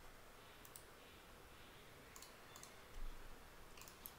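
Near silence with a few faint, short computer mouse clicks.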